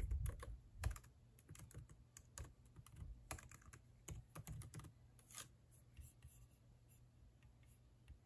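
Typing on a MacBook Pro laptop keyboard: a run of soft, irregular key clicks that stops about five and a half seconds in.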